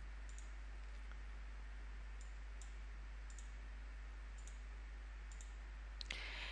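Faint computer mouse clicks, about ten, some in quick pairs, over a steady low hum.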